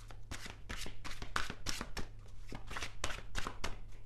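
A deck of tarot cards being shuffled by hand: a run of quick, crisp card slaps at about four or five a second.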